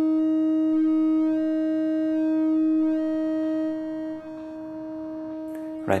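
Eurorack synthesizer tone: a triangle wave and a sine wave at the same pitch, mixed, offset and clipped through a Circuit Abbey Invy attenuverter, holding a steady pitch as the knobs reshape the waveform. The timbre shifts, and the tone drops in level about four seconds in.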